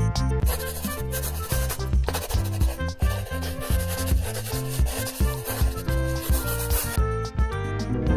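Felt-tip whiteboard marker rubbing and scratching across paper in a run of strokes as a drawing's outline is traced over, stopping about a second before the end, over background music.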